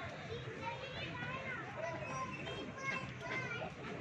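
Distant chatter of many people, with children's voices calling out; no clear words.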